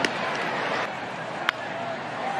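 Steady ballpark crowd murmur, with a single sharp crack of a bat hitting a baseball about one and a half seconds in: contact that pops the ball up. A short click comes right at the start.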